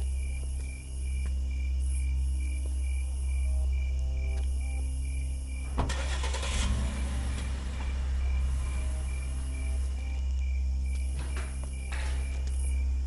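A car engine starts about six seconds in, with a sharp burst that settles into running.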